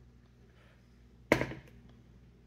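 A plastic hard hat set down on a digital kitchen scale on a wooden table: one sharp knock about a second and a half in, followed by a small tick.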